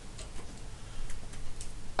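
A few faint, unevenly spaced ticks over a low steady room hum.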